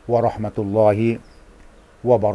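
A man's voice speaking on a fairly steady, drawn-out pitch for just over a second, then a pause.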